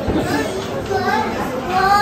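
People talking, with children's voices among them.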